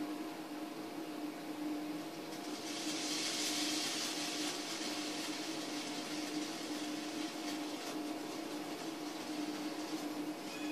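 Vinegar and lemon juice poured down a hookah stem onto baking soda: a hiss swells about two and a half seconds in and slowly fades as the acid and soda foam. A steady low hum runs underneath.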